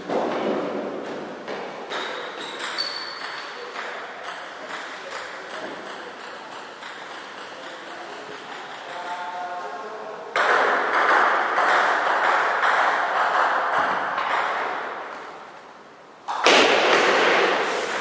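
Table tennis rally: the ball clicks off bats and table in an even run of about two hits a second. About ten seconds in, applause breaks out and fades away, and it starts again loudly near the end.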